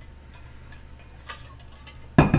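Faint clicks and sips from a man drinking out of a plastic water bottle, over a steady low hum.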